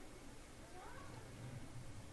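A faint, short call that rises and then falls in pitch about a second in, over a low steady background hum.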